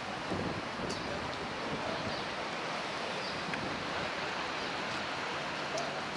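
Steady wind, an even rushing noise partly caught on the microphone, with no clear distinct events.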